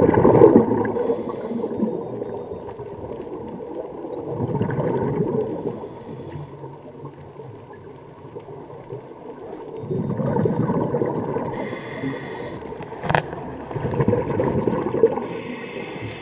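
Scuba regulator breathing heard underwater: a rumbling, bubbling exhale about every four to six seconds, each followed by a short hissing inhale. A single sharp click about thirteen seconds in.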